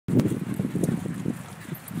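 Quick, irregular soft thuds of footfalls on a muddy woodland path, about five or six a second, loudest at the start and fading.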